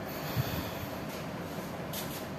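A person breathing through the nose, with a short low bump about half a second in, over a steady background hiss.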